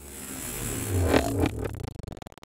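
Electronic noise music: a swell of hiss and scraping noise over a low hum builds to its loudest point just past a second in, then dies away. Rapid clicking returns near the end.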